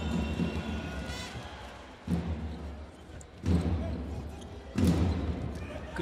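Indoor volleyball rally: three sharp hits of the ball, about a second and a half apart, the last the sharpest, over the rumble of an arena crowd.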